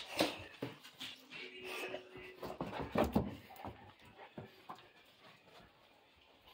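A bullmastiff and its owner walking through a house: scattered footfalls, clicks and shuffles on wood floor and carpet, with a brief whine about a second and a half in.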